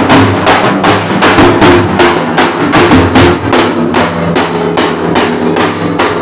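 Dafda frame drums beaten with sticks in a fast, steady rhythm of about four strokes a second.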